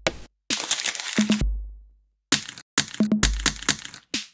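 A rhythmic beat made from crackling, crumpling paper sounds, punctuated twice by a deep electronic bass drum that fades out slowly.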